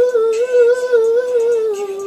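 A single high voice humming a wordless melody that wavers up and down in small steps, then drops lower near the end.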